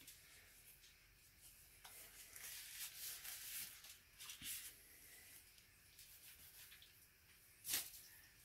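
Faint rubbing and crinkling of disposable gloves being peeled off the hands, with one short sharper sound near the end.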